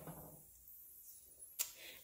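Quiet room tone with a single short click about one and a half seconds in.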